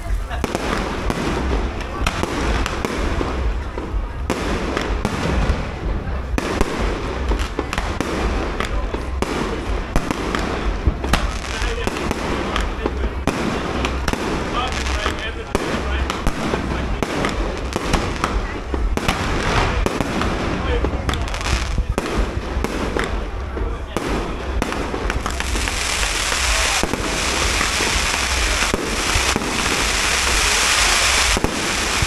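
Fireworks display: a continuous run of launches and bursting shells, with irregular bangs and pops throughout. Over the last few seconds it thickens into a loud, dense crackling hiss.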